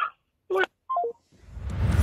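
Two short electronic telephone beeps, the second stepping down in pitch, then a rising whoosh near the end.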